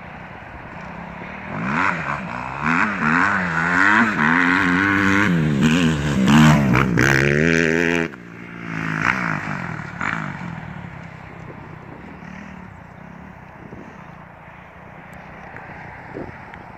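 Kawasaki KX250F four-stroke single-cylinder motocross bike being ridden hard, revving up and down repeatedly as it gets louder about a second and a half in. The sound cuts off abruptly about eight seconds in; after that the bike is farther off, revving briefly a couple of times and then running faintly.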